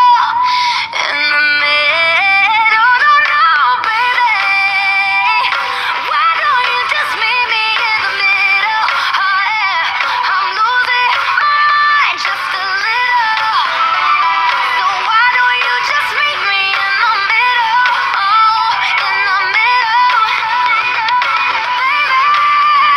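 A pop song playing: a high-pitched sung melody over steady backing music.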